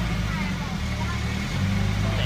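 Engine of a small river ferry boat running steadily underway, a low hum whose note shifts slightly about one and a half seconds in.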